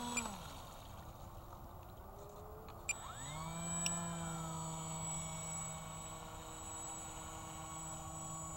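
Electric motor and propeller of an RC Icon A5 seaplane taxiing on water. The motor whine dies away at first; about three seconds in, after a short click, it spools up with a quick rising pitch and then holds a steady whine.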